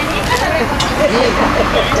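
Street ambience: a steady rush of traffic with other people's voices talking in the background.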